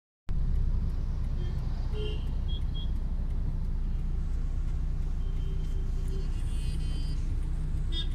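Steady low rumble of a car's engine and road noise heard from inside the cabin. Short horn toots from surrounding traffic cut in around two seconds in and again between about five and seven seconds.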